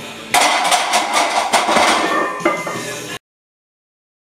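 Loaded barbell being racked onto a steel bench-press rack: a loud burst of metal clanks, knocks and rattles from the bar and plates that starts about a third of a second in and cuts off abruptly after about three seconds.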